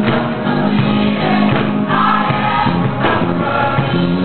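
Gospel choir singing in full harmony, with choir members clapping along.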